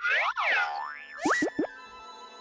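Cartoon boing sound effects: springy sweeps up and down in pitch, then a rising glide and three quick plunging zips about a second and a half in.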